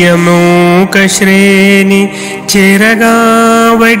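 A man singing a Telugu verse in the traditional padyam style, drawing each syllable out into long held notes that step up and down in pitch.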